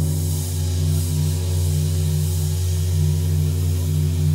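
Electronic drone music played live on hardware synthesizers and patched modules: a deep steady bass drone with a note above it pulsing on and off, steady higher tones and a hissing noise layer over the top.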